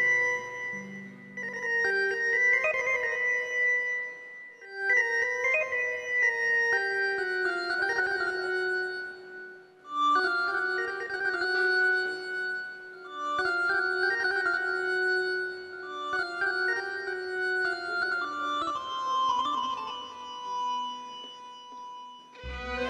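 Electronic keyboard playing an instrumental melody in an organ-like voice, held notes in phrases of a few seconds with short breaks between them.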